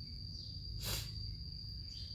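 A steady, high-pitched insect trill, like a cricket's, in a pause between speech, with a short breath-like hiss about a second in.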